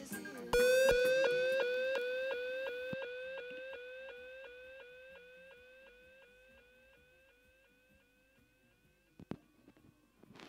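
Dub echo effect: a short, slightly rising siren-like tone repeated by a delay about four times a second, fading away over some eight seconds once the music drops out. A single click comes near the end.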